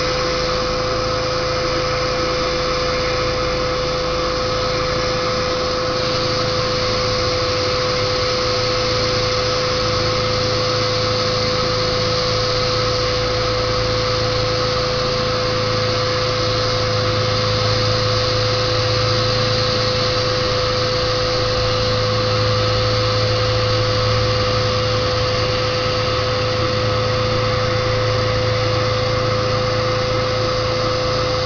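Electric air pump running steadily as it inflates a vinyl inflatable orca pool float: a constant whine over a rushing noise, with a lower hum that grows stronger after about ten seconds.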